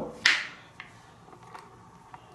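Handling noise as two metal Maglite flashlights are taken up off a wooden tabletop: a short rustling scrape just after the start, then a few faint clicks.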